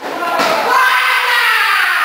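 A sharp thud about half a second in, then a long, loud shout in a young voice whose pitch slowly falls, held without a break.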